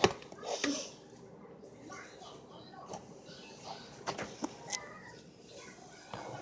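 A few light clinks of a spoon against a metal mixing bowl as muffin batter is spooned out, with a cluster of taps near the end and one brief ring.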